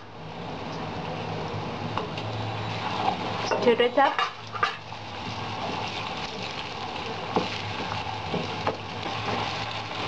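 Onions and garlic-ginger paste sizzling in hot oil in a steel kadai, stirred with a perforated metal spatula that scrapes around the pan. A few sharp clicks of metal on metal stand out over the steady sizzle.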